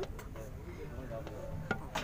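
Steady low rumble inside a railway coach with faint background voices, and one sharp click near the end.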